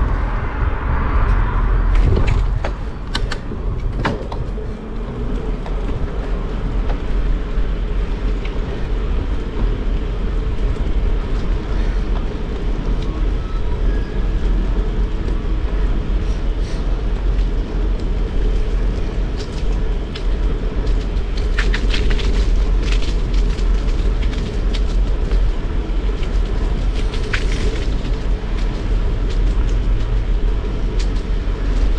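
Steady wind buffeting on the microphone and tyre rumble from a bicycle riding along a paved path, with scattered sharp clicks and rattles, a cluster in the first few seconds and another late on.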